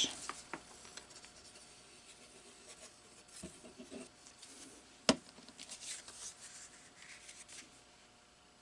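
Quiet paper handling: a glue stick rubbed over paper and a hand smoothing the paper down, with one sharp click about five seconds in.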